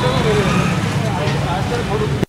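A man's voice answering quietly, muddled in a steady low drone of street noise.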